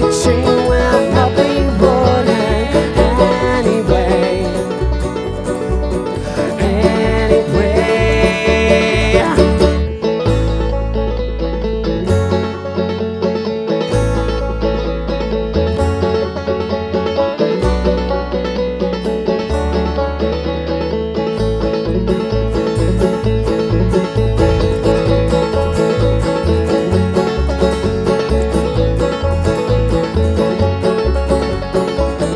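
A live acoustic band playing an upbeat country-folk song on acoustic guitar and upright bass, with a woman singing through the first ten seconds or so. After that it turns instrumental, the bass holding long low notes for a stretch before going back to a quicker plucked rhythm.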